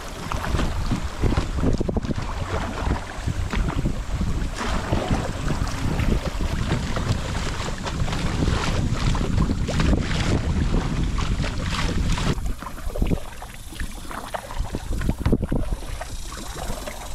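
Wind buffeting the microphone over water rushing and splashing around a paddled kayak on a choppy river. About three-quarters of the way through the rush eases, and single paddle splashes stand out.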